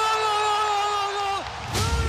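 A Spanish-language football commentator's long drawn-out goal shout, one sustained high note that breaks off about a second and a half in, over a low rumble of stadium crowd noise.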